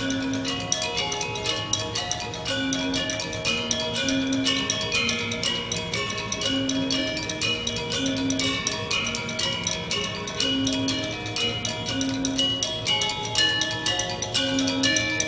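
Balinese gamelan ensemble playing: bronze-keyed metallophones struck in fast, dense strikes over slower, deeper ringing notes that recur every second or two. The paired instruments are tuned slightly apart from each other, not to Western equal temperament.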